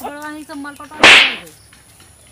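A single loud slap, a sharp crack about a second in with a short hissing tail, as of a hand striking a face.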